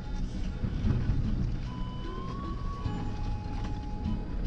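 Vehicle cabin noise while driving on a rough dirt road: a steady low rumble with rattles, and a thin squeak that holds for about a second past the middle.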